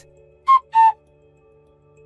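Two-note whistle-like sound effect: two short high tones in quick succession, the second a little lower and longer, over quiet background music.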